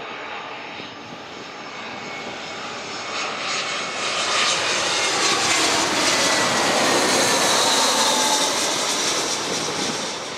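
Airbus A320-232 jet airliner on landing approach passing low overhead, its IAE V2500 turbofans growing louder to a peak and then easing off near the end. The engine whine falls in pitch as it passes.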